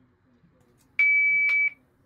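One steady, high-pitched electronic beep lasting under a second from the exoplanet sonification demo's sounder, with a click at its start and another midway. Its pitch stands for the model planet's orbital period: the longer the period, the lower the tone.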